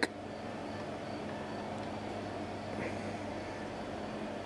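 Quiet room tone: a steady background hiss with a low electrical hum, and one faint short blip near three seconds in.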